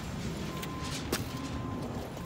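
1995 Buick Regal Grand Sport's 3800 V6 idling as a steady low rumble, with a faint steady high tone and one sharp click just after a second in.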